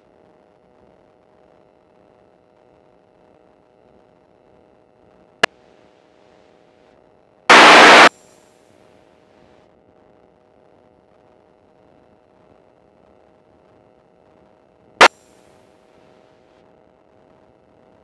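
Aircraft radio heard through the headset intercom: a faint steady hiss with a thin steady hum, broken by a sharp click about five seconds in, a loud half-second burst of static near eight seconds, and another sharp click around fifteen seconds in. These are squelch breaks and brief keyed transmissions on the newly selected frequency.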